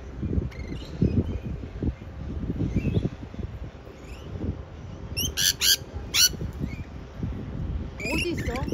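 Rainbow lorikeets calling in a tree: short high chirps throughout, with two or three loud, shrill screeches a little past halfway. A low rumbling noise runs underneath.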